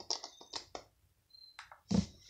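A series of light clicks and taps from a small plastic gadget and tablet being handled, with a louder knock near the end.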